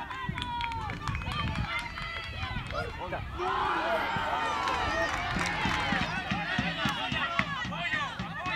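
Several voices shouting and calling out across an open football pitch during play, loudest about halfway through. A few sharp knocks come early, from the ball being kicked.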